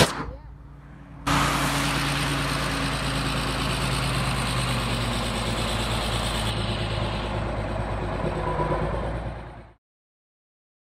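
John Deere 8430 tractor's diesel engine running steadily as it pulls a disc harrow past, starting abruptly about a second in and cutting off suddenly just before the end.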